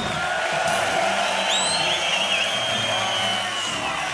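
Concert crowd cheering and whistling at the end of a rock song, with a few rising whistles about one and a half seconds in.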